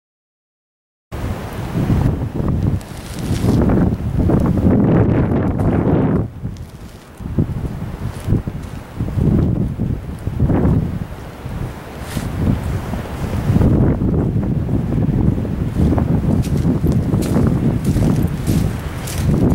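Wind buffeting the camera microphone in loud, uneven gusts, starting about a second in.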